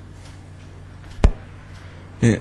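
Quiet room tone with a steady low hum, broken by a single short, sharp thump a little past halfway through.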